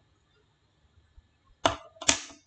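Near-silent room tone, broken about one and a half seconds in by a single sharp tap that dies away within a quarter of a second.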